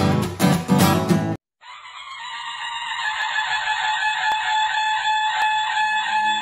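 Acoustic guitar strumming that cuts off abruptly about a second and a half in. After a brief gap, intro music starts: a sustained high-pitched tone that grows louder, with a light tick about once a second.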